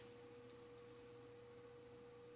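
Near silence: faint room tone carrying one thin, steady tone.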